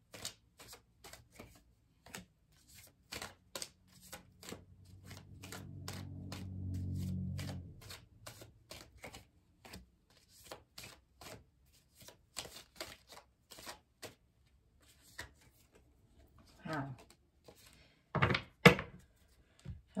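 Tarot cards being dealt and laid down on a wooden tabletop: a steady run of short, soft clicks and snaps, about three or four a second.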